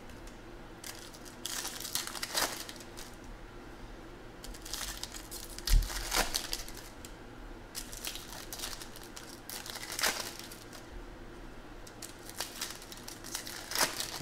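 Foil trading-card pack wrappers crinkling and being torn open, with the stiff chrome cards handled between them. Irregular short crackles throughout, with a soft thump about six seconds in.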